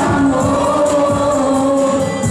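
Live music through a PA: a young male singer holds one long sung note over a backing track with a beat.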